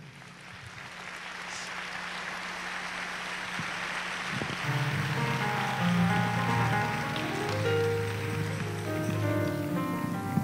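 Congregation applause that fades over the first few seconds as soft instrumental music with held keyboard chords comes in about four to five seconds in.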